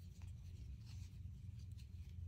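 Faint scratching and soft ticks of a crochet hook drawing macramé yarn through stitches, over a low steady hum.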